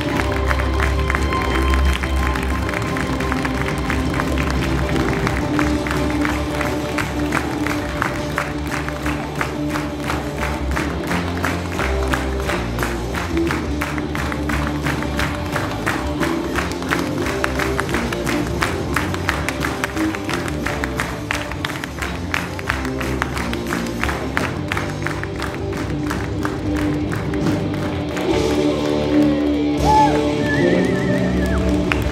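Music playing, with dense applause and clapping over most of it that dies away near the end.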